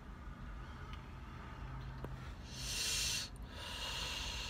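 A drag on a disposable vape: a hissing in-breath about two and a half seconds in, then a long hissing exhale near the end.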